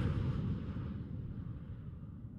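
Low rumbling tail of an end-card whoosh sound effect, fading slowly.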